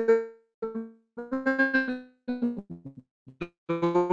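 A voice coming through a poor video-call connection, breaking up into short fragments with gaps of silence between them. The vowels are held and smeared into flat, tone-like notes, as happens when a call's audio drops packets.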